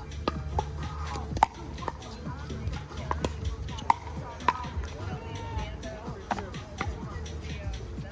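Pickleball paddles striking the hollow plastic ball in a rally: a series of sharp pops about a second apart, the loudest about a second and a half in and near four seconds. Fainter pops come from play on the neighbouring courts.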